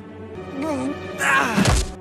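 Soundtrack music under a young man's wavering groan and a louder grunt, with a low thud about a second and a half in.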